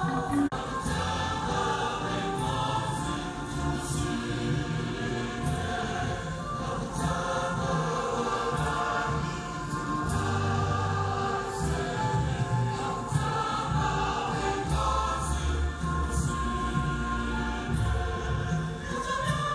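Church choir singing a hymn in parts over low bass notes, with a regular beat about every second and a half.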